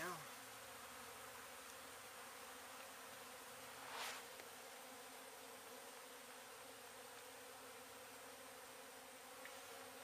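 Faint, steady buzzing of a honey bee colony disturbed during a hive cut-out, with loose bees flying around the hive box. About four seconds in there is a brief rustle.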